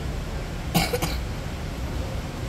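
A short cough in two quick bursts, about a second in, over a steady low background rumble.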